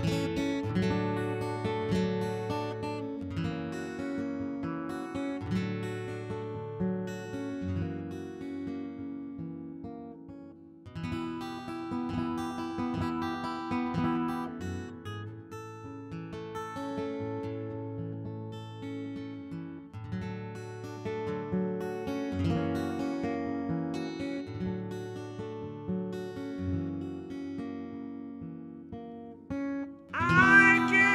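Acoustic guitar music played live: a run of picked and strummed notes that ring out, easing off briefly about ten seconds in before the pattern starts again.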